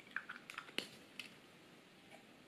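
A few faint small clicks and taps from a plastic-capped ballpoint pen being handled, spread over the first second or so.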